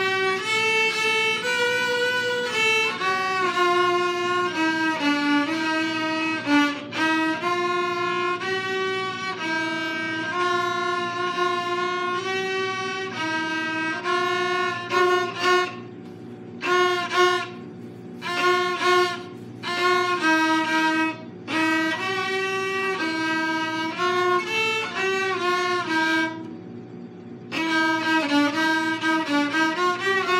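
Two violins bowed together, playing a simple tune of held notes. About halfway through comes a run of short, separated notes, and there is a brief pause a few seconds before the end.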